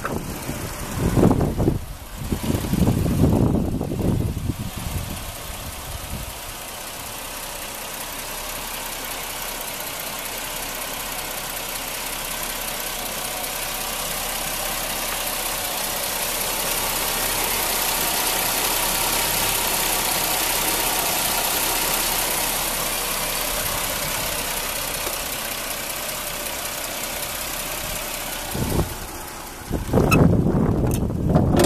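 Chevrolet Venture minivan's 3.4-litre V6 idling steadily with the hood open, heard close to the engine bay, growing gradually louder toward the middle and easing off again. Wind buffets the microphone in the first few seconds.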